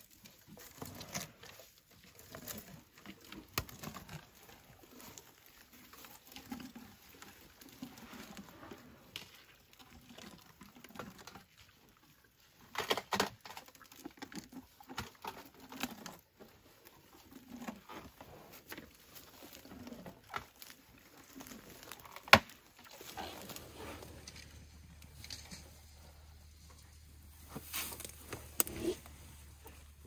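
African elephants chewing and stripping bark from a felled marula tree: irregular crunching, cracking and rustling of bark and wood, with one sharp loud snap about two-thirds of the way through.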